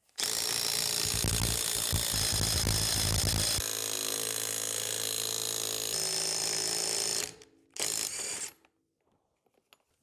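A power tool spins a socket on a long extension, running in a bolt that draws a drive sprocket onto a hydraulic motor shaft. It runs rough and loaded for about three and a half seconds, then steadier and more even until about seven seconds, with one short burst again about a second later.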